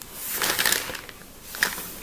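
A brief scratchy, rustling noise lasting about a second, with a shorter, fainter one near the end.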